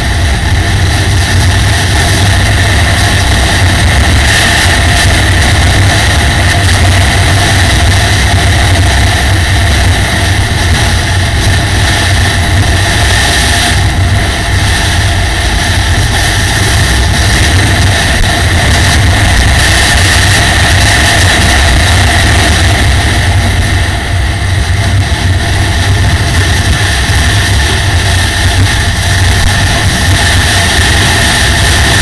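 Dual-sport motorcycle engine running at a steady cruise on a gravel track, heard loud and unbroken from a helmet camera with a dense rush of wind noise over it.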